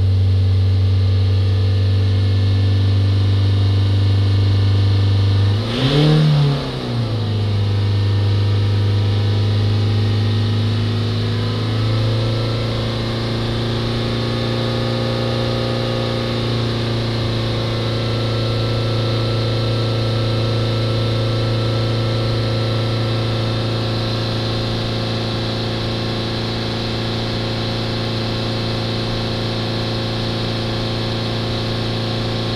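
Ford Transit diesel engine running at steady raised revs, held up to bring the exhaust up to temperature while a newly fitted exhaust gas temperature sensor is checked. About six seconds in the revs briefly dip and swing back up. From about twelve seconds in the engine settles at slightly higher revs.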